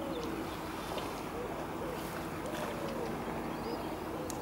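A dove cooing several times in short, arched low notes over the steady wash of calm sea water.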